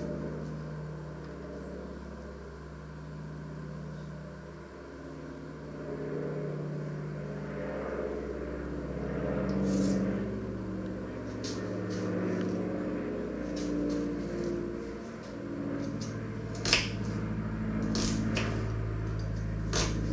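A kitchen knife cutting an onion on a wooden chopping board, giving a few scattered sharp knocks of the blade on the board, over a steady low background hum.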